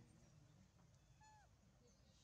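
Near silence, with one faint, short animal call that falls in pitch about a second in.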